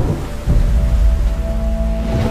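Thunder rumbling over rain, the deep rumble swelling about half a second in, with a held note of the film score above it.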